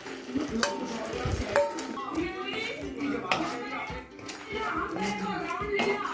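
Wooden spatula stirring in a wok, with scattered knocks and scrapes against the pan as cornflour slurry is stirred into the sauce to thicken it.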